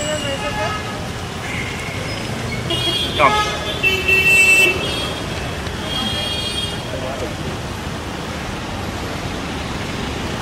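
Steady city street traffic noise from passing cars, with a short, high car horn toot about three to four seconds in.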